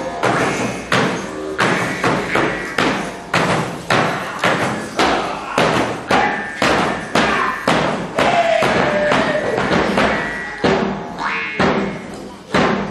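Shaman's frame drum beaten with a stick at a steady pulse of about two strokes a second. A short falling tone sounds between the beats about two-thirds of the way through.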